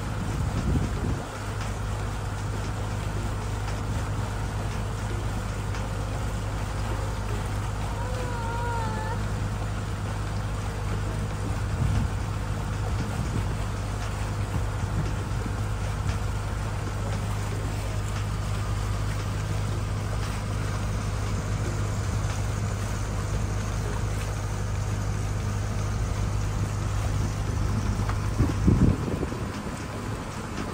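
Resort launch boat's engine running steadily under way, a deep even drone with water and wind noise over it. A short wavering tone sounds about eight seconds in, and a few louder bumps come near the end.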